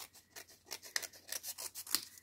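Scissors snipping through the edge of a paper envelope, a rapid series of small cuts that grows louder in the second half.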